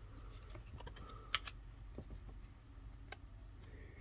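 Paper trading cards handled between the fingers: faint sliding and a few light clicks as cards are pushed across the stack, the sharpest about a third of the way in and again near the end, over a low steady hum.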